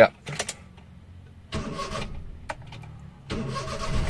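Engine of a small Maruti car being started from inside the cabin. A few clicks from the ignition come first, then the engine cranks and fires, and it runs steadily from near the end.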